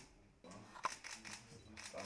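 A single camera shutter click a little under a second in, over faint room murmur and voices during a photographed handshake.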